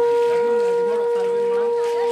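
A loud, steady tone at a single unwavering pitch, like a held horn note, that starts abruptly just before and runs without a break, over faint voices.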